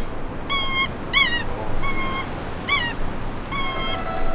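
A bird honking repeatedly outdoors: five short calls, each rising and falling in pitch, under a second apart.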